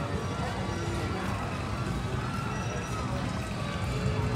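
Indistinct voices of people walking close by, over a steady low rumble.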